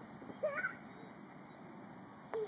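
A Saanen goat kid bleats once, a short call about half a second in.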